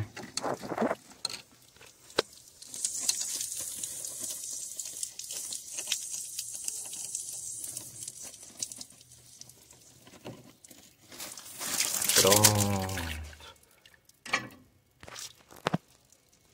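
Water hissing and spattering from the leaking joint between a brass garden tap and a rubber hose as the hose clamp is loosened with a screwdriver, with a few small metal clicks. The hiss holds steady for several seconds.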